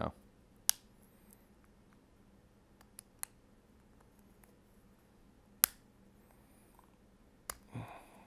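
Five sharp, separate plastic clicks, the loudest about a second in and again near six seconds, with a quick pair around three seconds. These are the snap clips of a Samsung Galaxy S4's plastic midframe popping loose one at a time as it is pried off with a plastic opening pick.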